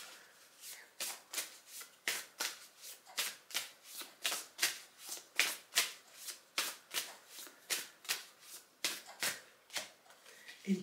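A deck of oracle cards being shuffled by hand: a steady run of short swishing strokes, about three a second.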